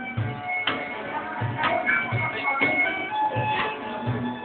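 Acoustic group playing: a cajón keeps a steady beat, with low bass thumps about twice a second and sharp slaps. Acoustic guitar and held melody notes play over it.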